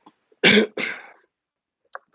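A man coughing: two short coughs in quick succession, about half a second in.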